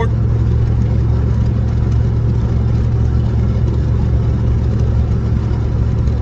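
Steady low drone of a car heard from inside the cabin, holding an even level with no change in pitch.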